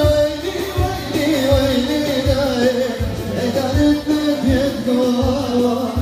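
Live Middle Eastern dance music: a singer's wavering, ornamented melody over electronic keyboard, with a low drum beat about every three-quarters of a second.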